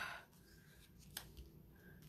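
Near silence: faint handling of a sheet of paper on a paper pad, with one light click about a second in.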